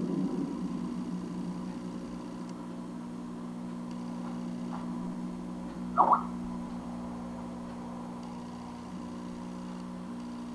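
A steady low electrical hum with a faint hiss, and one brief, louder sound about six seconds in.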